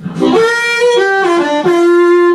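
Diatonic blues harmonica playing a short phrase: a few notes stepping down, with pitch bends, settling on a long held note, a blue third.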